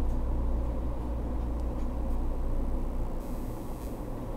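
Steady low-pitched background hum with a little hiss, with no distinct events; a faint high hiss comes in near the end.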